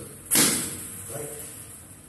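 Table tennis racket striking a ball mounted on a spring wire: one loud, sharp smack with a short ringing decay, about a third of a second in.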